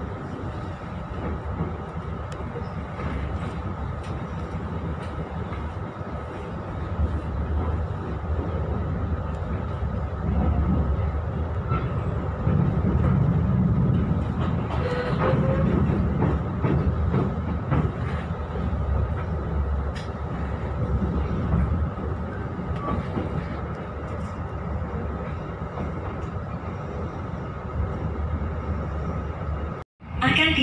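Moving passenger train heard from inside its coach: a steady rumble of wheels on the rails, swelling louder for several seconds midway, with a steady high hum running under it.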